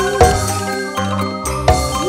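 Dangdut koplo band playing live: a keyboard melody over regular kendang drum strokes.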